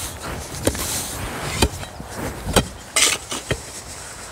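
A T-axe hewing a wooden post into a cylinder: sharp chopping blows about once a second.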